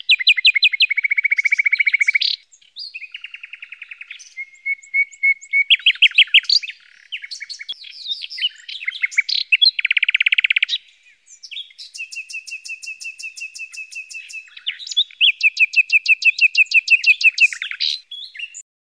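Canary singing a long, loud song of rapid trills and rolls, switching to a new repeated phrase every second or two, with two short breaks.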